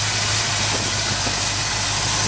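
Chevrolet 327 small-block V8 idling steadily, a low hum with a hiss over it.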